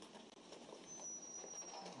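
Quiet room tone in a meeting room, with a faint, thin high-pitched tone lasting under a second about a second in.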